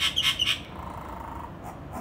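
A bird calling in a rapid run of sharp, high chirps, about six a second, that stops about half a second in. A fainter, lower sound follows.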